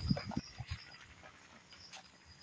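Insects calling in a steady high-pitched drone that breaks off and resumes, with a few brief louder low sounds in the first half second.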